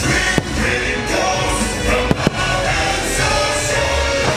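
Fireworks show music playing loudly, with sharp firework bangs over it: one about half a second in and two in quick succession about two seconds in.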